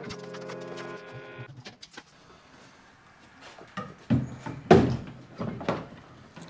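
Hard plastic clunks and knocks of a MotorGuide Xi3 trolling motor's housing and quick-release bracket being handled and set onto its kayak mounting plate. There are several knocks in the second half, the loudest just before the end.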